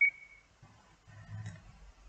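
A single short high-pitched beep that fades within half a second, followed later by a faint low murmur and a light click.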